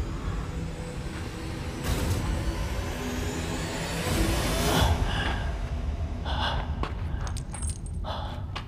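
Film sound design: a continuous low rumble under a noisy whoosh that swells to its loudest about four to five seconds in, with a few short sharp noises in the last few seconds.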